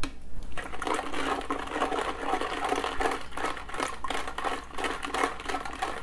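Metal ladle stirring powder into liquid in a glass jar, scraping and clinking against the glass in a quick, even rhythm that starts about half a second in.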